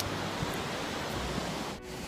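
Ocean surf breaking on a beach, a steady wash of noise mixed with wind on the microphone. It briefly drops out near the end.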